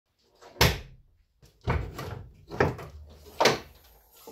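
The hood of a Mercedes W220 S-Class being unlatched and raised: four sharp clunks about a second apart, each dying away quickly.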